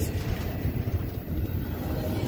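Wheels of a passing double-stack container freight train rolling over the rail at a trackside curve oiler: a steady low rumble with no flange squeal.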